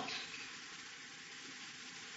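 Faint, steady hiss of room tone and recording noise, with no distinct sound event.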